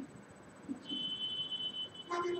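A steady high-pitched electronic tone starts about a second in and holds to the end.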